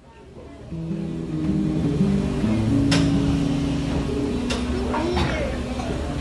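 Instrumental music fading in about a second in: held chords that change in steps every second or so, with a few sharp taps over them.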